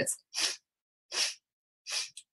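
A woman sniffing breath in through her nose in three short strokes, a little under a second apart. This is a yogic breathing exercise in which the inhale is taken in three strokes.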